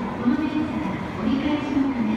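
A station public-address announcement: a voice echoing along an underground platform, with an arriving train beneath it.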